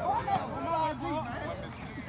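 Men's voices talking and calling out, unclear and at a distance, with no distinct impacts or other sounds.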